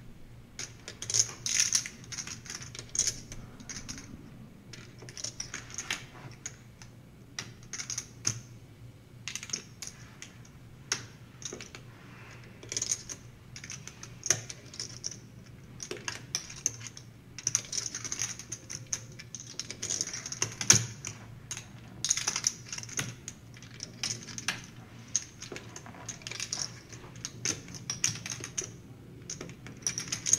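Clay poker chips clicking in quick irregular runs as a player riffles and fingers a stack at the table, over a low steady hum.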